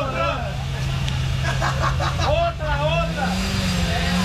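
A motorcycle engine running at a steady idle, its revs rising about three seconds in, with people talking over it.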